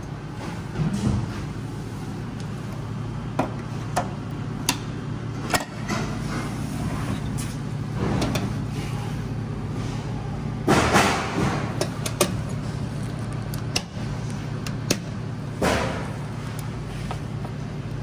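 Scattered clicks and knocks of a multi-pin industrial power plug and its connectors being handled and fitted to their sockets, with a cluster of knocks about eleven seconds in, over a steady low hum.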